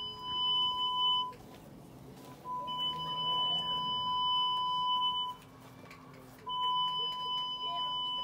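Electronic beeping tone: a steady, high, pure beep about two seconds long, sounding three times with gaps of a little over a second between, over faint voices.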